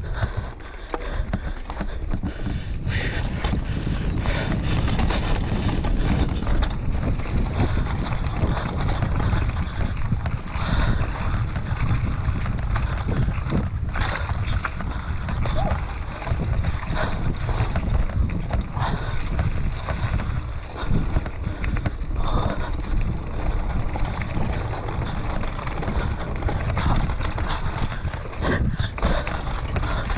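Mountain bike ridden fast down a dirt forest trail: steady wind buffeting on the camera microphone and tyre rumble, with frequent knocks and rattles as the bike goes over roots and bumps.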